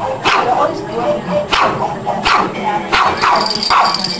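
Pug puppy barking in about five short barks, with people laughing. Pop music with a steady high tone comes in near the end.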